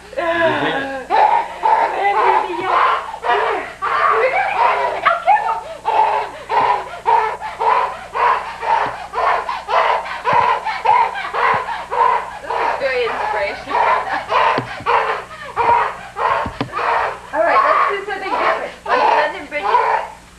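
Voices talking and calling out almost without a pause.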